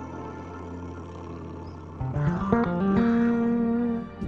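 Instrumental music: a soft sustained pad over a low drone. About two seconds in, an effects-laden guitar comes in loud, climbing through quick stepped notes and settling on a long held note.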